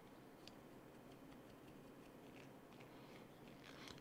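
Near silence, with a few faint ticks of a 2 mm hex driver working a small screw into a plastic axle cap; the screw is hard to start.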